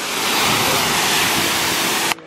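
Water spraying from a Sun Joe SPX 9004 electric pressure washer's spray gun onto a car's wet paint: a steady, loud hiss of misting water that swells a little in the first half-second.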